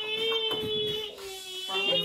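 A child's voice holding one long, steady note.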